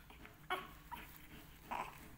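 Newborn baby crying in two short cries, one about half a second in and another near the end.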